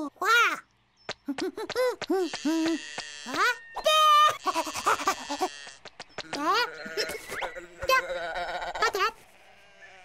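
Cartoon sheep bleating, several wavering voices overlapping, after a short cartoon-chick vocal at the start. The bleating stops about a second before the end.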